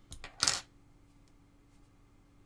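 A few light clicks, then one short, sharp clatter of a small hard object about half a second in.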